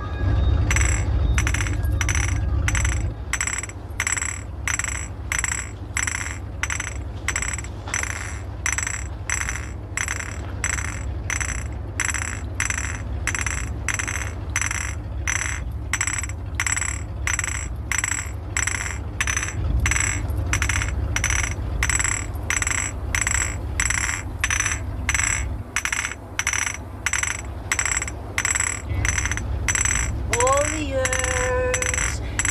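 Three glass bottles clinked together in a steady rhythm, about two clinks a second, each with a bright ringing tone, over a continuous low rumble.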